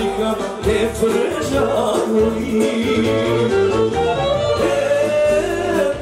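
Live Balkan party music from an accordion-led band, with a man singing into a microphone over a steady bass beat.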